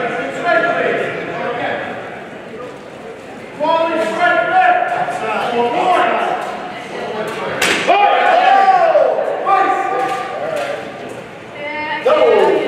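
Voices calling out and echoing in a large hall during a steel longsword bout, with one sharp clash of steel feders about seven and a half seconds in, the loudest moment.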